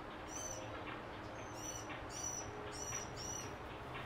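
A small bird chirping: about five short, high chirps spread over a few seconds.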